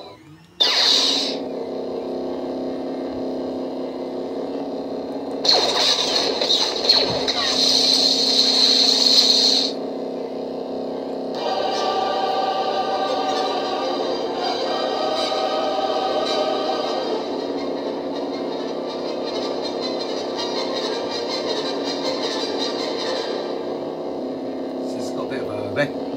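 A Proffieboard lightsaber's sound font playing through its small speaker: an ignition burst about half a second in, then the blade's steady hum with a soundtrack-style music track and voices over it. A louder, noisier stretch comes from about six to ten seconds.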